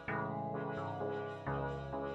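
Melodic synth notes from a Tone2 Electra2 software synthesizer playing a looped pattern, a new note struck about twice a second and fading before the next.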